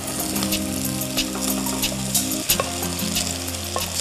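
Capsicum pieces frying in a pot, a steady sizzle as cooked rice is tipped in on top of them, with scattered clicks and scrapes of a wooden spatula against the bowl and pot.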